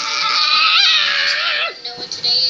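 A child's voice making one long, high-pitched held sound, steady in pitch with a brief wobble near the middle, that cuts off near the end.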